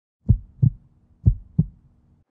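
Heartbeat sound effect: two double 'lub-dub' thumps about a second apart, deep and short, over a faint low hum.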